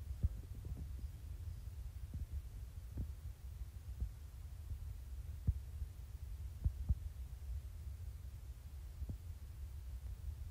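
Soft clicks of TI-84 Plus graphing calculator keys being pressed one at a time, irregularly a second or two apart, over a low steady hum.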